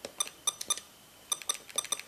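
Keys being pressed on a Canon X-07 handheld computer's keyboard, each press giving a short, high electronic beep. The presses come in two quick runs, one of about five and one of about seven.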